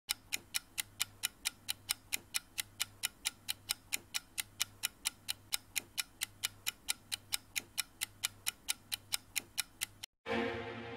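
Clock-ticking sound effect: rapid, even ticks, between four and five a second, over a faint steady low hum.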